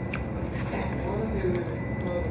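Indistinct background voices over a steady low rumble, with a few light clicks and taps.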